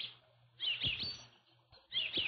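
Birds chirping faintly in short bursts of high chirps: a brief one at the start, a small cluster about half a second in, and another near the end.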